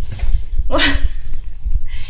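French bulldog puppy giving one short, falling whining cry about a second in, a protest as it braces against being pulled on its leash.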